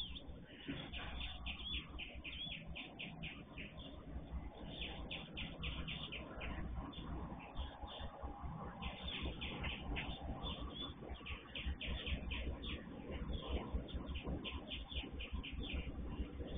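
Many birds chirping over a low, distant rumble from approaching diesel freight locomotives, which slowly grows louder.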